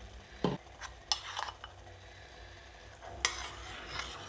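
A metal utensil stirring in a stainless steel saucepan on the stove, with a dull knock about half a second in and several sharp clinks of metal on the pot.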